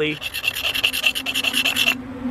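Knife blade scraped rapidly back and forth across the painted face of a laser-engraved white ceramic tile, a scratch test of the finish, which is said to be completely resistant to scratches.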